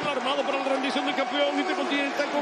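A man's voice speaking continuously: excited sports commentary.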